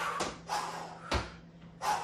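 Sneakered feet landing from repeated tuck jumps on a tiled floor: four dull thuds, about one every two-thirds of a second.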